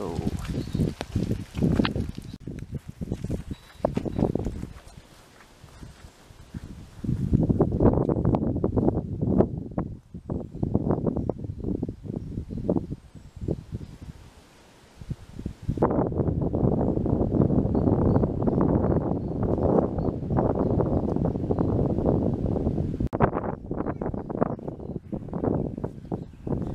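Footsteps walking on a wet gravel path, in a few stretches of steady walking with quieter pauses between them.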